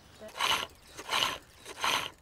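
Digging tools scraping sandy soil in an excavation trench: three separate scrapes, about two-thirds of a second apart.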